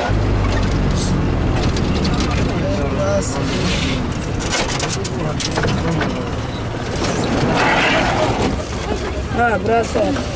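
Minibus engine running, heard from inside the cabin as a steady low rumble with rattles and clicks, with passengers' voices; clearer talk near the end.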